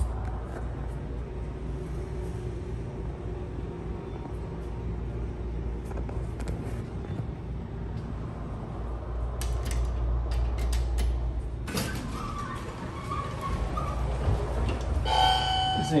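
Hydraulic elevator's pump motor running with a steady low hum while the car travels to the landing; a few clicks come just before it stops, and at about twelve seconds a louder noise starts as the car arrives and the doors open, with a chime-like tone near the end.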